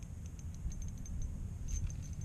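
Low, uneven rumble of wind buffeting the camera's microphone, with a few faint ticks.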